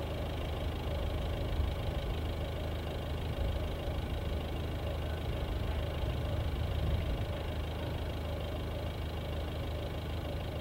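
A motor vehicle's engine running steadily with a low, even hum.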